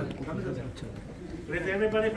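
Indistinct voices of people talking in a room, with one voice louder near the end.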